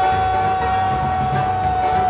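A man's long yell held steadily on one pitch through the whole stretch, over music with a steady beat.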